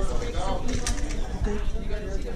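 Indistinct murmured voices close by, with no clear words, over a steady low rumble.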